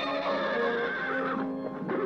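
A cartoon horse neighing over orchestral background music with held notes, followed by a sharp knock near the end.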